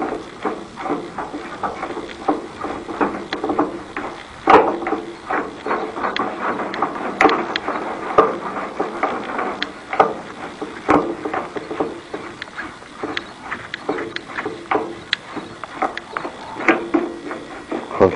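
Irregular clicks and knocks from hands working a cold laminating machine while its pressure knobs are turned down onto the rollers.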